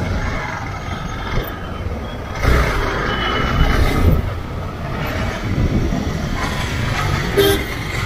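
Dense city road traffic heard from a two-wheeler riding through it: a steady rumble of car, truck and auto-rickshaw engines and tyres, with a brief sharp sound about seven seconds in.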